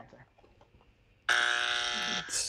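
Game-show buzzer sound effect: a steady, flat buzzing tone that starts abruptly about a second and a half in, sounding for the wrong answer.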